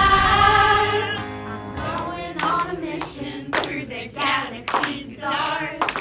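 Group singing a pop-style camp song over backing music: a long held note first, then shorter sung phrases with claps about once a second.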